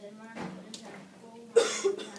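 A person coughing twice in quick succession about one and a half seconds in, loud and sharp, over faint speech.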